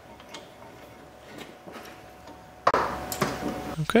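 Faint scattered clicks and taps of a brake caliper and C-clamp being handled, then a sudden louder rustle about two-thirds of the way in.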